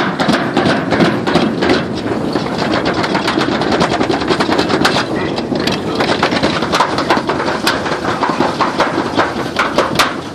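Toboggan sled running fast down a metal trough slide: a loud, steady rumbling rattle with many rapid, irregular clicks.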